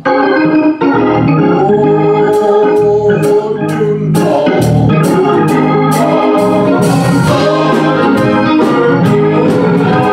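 Organ playing the introduction to a gospel song, held chords with a moving line, joined by a steady drum beat of roughly two strokes a second from about two seconds in.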